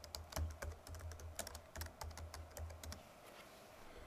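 Typing on a computer keyboard: a quick run of key clicks that stops about three seconds in.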